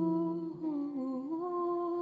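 Soft background music of slow, held humming-like notes that step to a new pitch every second or so.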